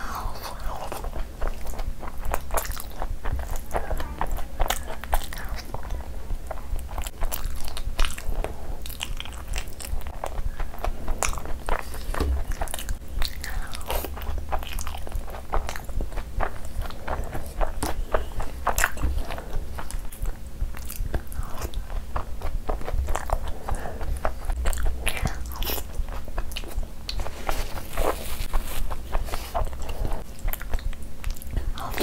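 Close-miked chewing of a mouthful of butter chicken curry: a dense, continuous run of wet clicks and smacks, with fingers squishing and scooping the gravy on the plate.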